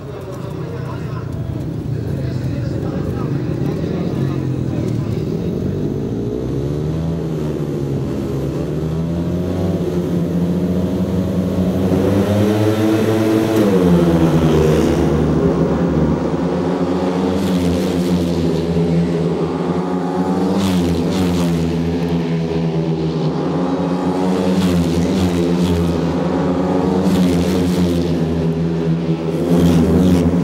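Several speedway motorcycles' single-cylinder engines revving and running together, their pitch rising and falling; the sound builds over the first few seconds, with one strong rev up and drop in pitch about halfway through.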